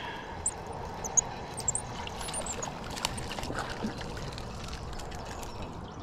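A small catfish being reeled in on a spinning rod: water splashing and trickling as the fish is drawn through the shallows and lifted out, with a few sharp clicks.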